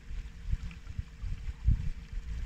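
Inflatable boat under way on a lake: irregular low rumbling and thumps from water and wind against the hull and microphone, the strongest near the end, over a faint steady hum.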